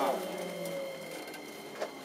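Keikyu 2100-series train's traction motors whining as it brakes into the station, the pitch falling as it slows, over a faint steady high tone, with a short click near the end.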